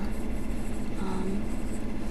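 Steady low hum and rumble, with a brief faint vocal sound about a second in.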